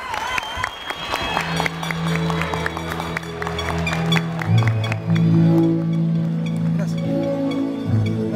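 An audience applauds, with a warbling whistle at the start. About a second and a half in, music with long held low notes comes in and carries on under the thinning claps.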